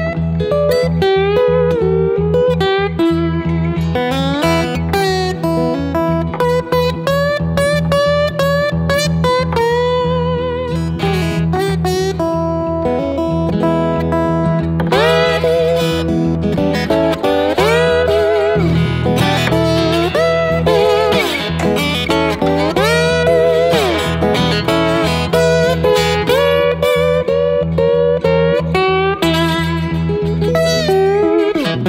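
Acoustic-electric guitar (PRS AX20E) in open E tuning, fingerpicked and played with a slide. A steady repeating bass line runs under a picked melody, and the melody turns to gliding, wavering slide notes through the middle stretch.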